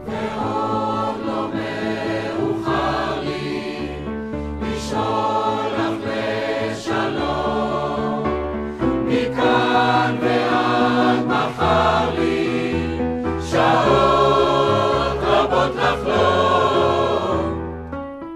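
Mixed choir singing a slow song in several voice parts with piano accompaniment, swelling louder in the second half. The choir's phrase ends just before the close, leaving the piano alone.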